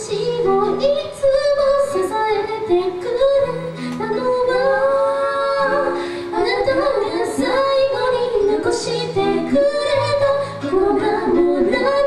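A woman singing a melody live into a microphone, backed by an acoustic band with acoustic guitar and keyboard holding steady low notes underneath.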